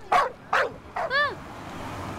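Three short, sharp animal calls, bark-like, coming in quick succession in the first part.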